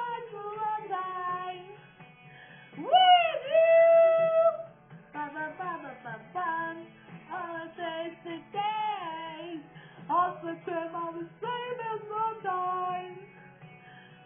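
A high female voice singing to music, with bending, held notes, the longest and loudest about three seconds in. It sounds thin, as if played from a television's speaker.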